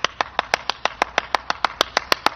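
One person clapping steadily and fast, about seven claps a second.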